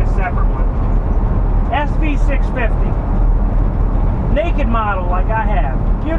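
Steady low rumble of engine and road noise inside the cab of a moving Ford van. A voice speaks briefly twice, once about two seconds in and again near the end.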